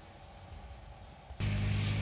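Quiet cabin background, then about one and a half seconds in a steady low hum starts suddenly: the Range Rover Velar's 2.0-litre engine running at idle, heard from inside the cabin.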